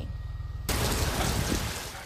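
Heavy rain falling, a steady even hiss that starts abruptly about two-thirds of a second in, after a low background hum.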